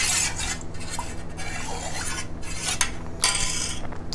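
A metal spoon stirring a liquid juice mixture in a steel pot, scraping and clinking against the pot's sides, with a louder scrape about three seconds in. A faint steady low hum runs underneath.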